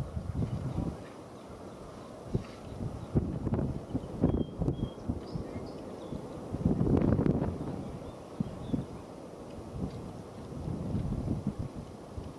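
Gusty wind buffeting the microphone in irregular low rumbles, loudest about seven seconds in.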